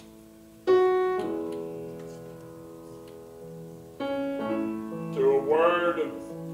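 Piano playing slow, soft chords: one struck about a second in and another about four seconds in, each left to ring and fade. A voice comes in over the piano near the end.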